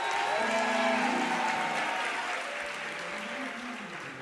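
Congregation clapping with voices calling out over it, swelling during the first second and then slowly dying down.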